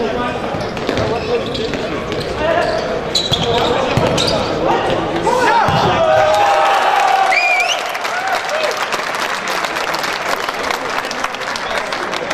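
Futsal players shouting across an indoor court, with the ball's kicks and bounces and players' footfalls echoing off the sports-hall floor and walls; the shouts are loudest around the middle.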